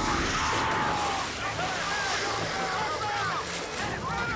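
Underwater film sound effects: a steady rush of churning water over a low rumble, with short rising-and-falling squeals running through it.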